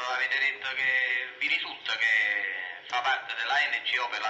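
A man's voice drawn out in long held tones, close to singing, in two sustained phrases followed by shorter broken ones.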